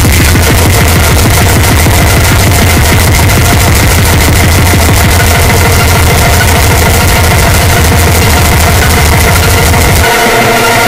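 Loud, heavily distorted speedcore track: a very fast, relentless kick-drum pattern over a saturated bass, with a steady synth tone above it.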